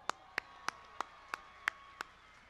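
One person clapping hands close to a microphone: six single claps at an even pace of about three a second.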